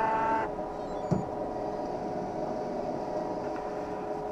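Optical lens edger at the end of its cycle. A held whine from its slowed motor cuts off about half a second in, leaving the machine's steady hum with a few fixed tones. A single soft knock comes about a second in.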